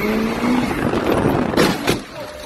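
Car engine accelerating, heard from inside the cabin: its pitch climbs over the first half second, then gives way to a loud rush of engine and road noise. Two sharp cracks come close together near the end.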